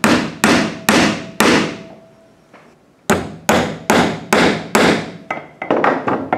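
Hammer driving nails into a wooden board: four sharp blows about half a second apart, a pause of over a second, then another run of about five blows and a few lighter taps near the end.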